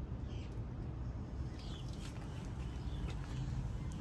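Steady low background rumble, with two faint short high chirps, one just after the start and one about a second and a half in.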